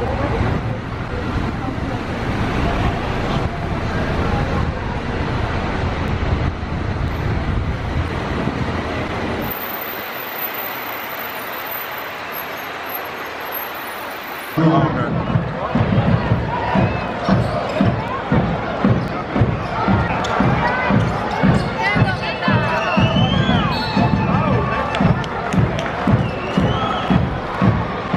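Street noise with a low rumble of traffic. After an abrupt cut about halfway through, a basketball is dribbled steadily on an indoor court, about two to three bounces a second, over arena crowd noise.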